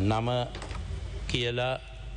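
A man speaks a couple of short words into a desk microphone, with light clicking and tapping in the pause between them.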